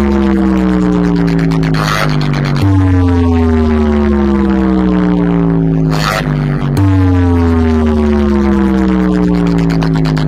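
A huge DJ speaker stack playing a bass-test track very loud. A deep bass drone under a tone that slides slowly downward repeats about every four seconds, and each cycle ends in a short noisy hit before it restarts.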